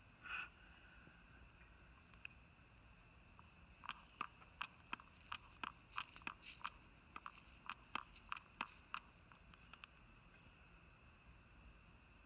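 Hand trigger sprayer squirting leak-detection bubble solution onto the brazed joints of a heat pump's reversing valve during a leak search: a string of short, sharp squirts, irregular at about two or three a second, starting about four seconds in and stopping some five seconds later.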